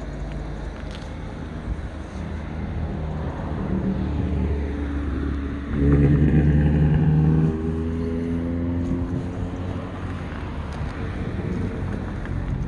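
Car engine running, building up and loudest for about a second and a half past the middle, then easing off with its pitch shifting slightly.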